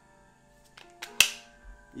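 A single sharp metallic click from an AR-15 pistol's folding stock adapter as the folded arm brace is swung out and locks open, with a couple of faint ticks just before it. Soft background music plays underneath.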